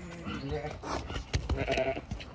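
Zwartbles ewes bleating: two calls, one at the start and a second, higher one in the second half, with a few knocks among them.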